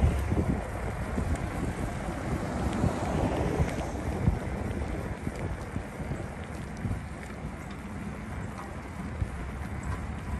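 Wind buffeting the microphone of a camera riding on a moving bicycle, a gusty low rumble, with a few light clicks and rattles from the bike.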